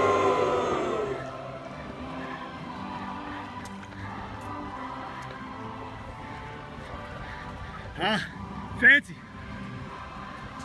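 A man's drawn-out "whoa" trailing off in the first second, then a low steady background with faint music. Two short, loud vocal calls with bending pitch come about eight and nine seconds in, the second the loudest.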